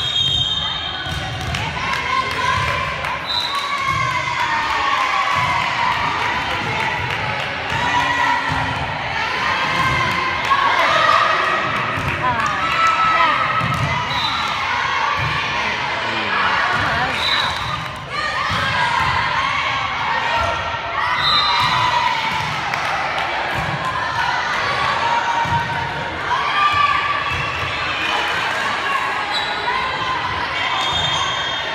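Volleyball being played in a gymnasium: repeated thuds of the ball being hit and landing, under a steady mix of players' and spectators' voices calling and cheering, echoing in the hall.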